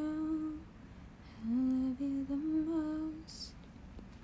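A woman humming a tune with her lips closed: one phrase of held, stepping notes ends just after the start, and a second rising phrase runs from about a second and a half in to about three seconds in.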